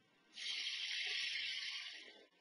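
A steady, airy hiss, starting about half a second in and fading out near the end.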